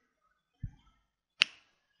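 Two small clicks from working a computer at a desk: a dull, low knock about half a second in, then one sharp, bright click about a second and a half in.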